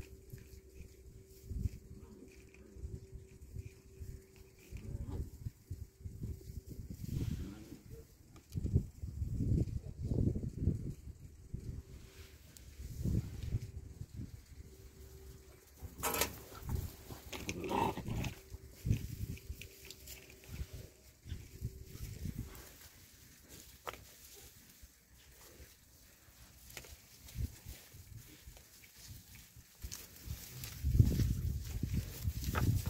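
Puppies play-growling and grunting as they wrestle, in irregular low bursts, with a short higher yelp about two-thirds of the way in.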